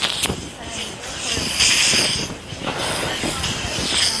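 Axe body spray aerosol can hissing in short sprays, the strongest about a second and a half in.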